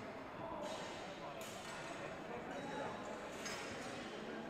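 Indistinct background chatter of many people, steady throughout and echoing in a large sports hall.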